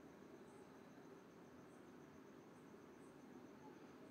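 Near silence: a faint, steady sizzle of onions, mutton and spice paste frying in oil in an aluminium pressure cooker.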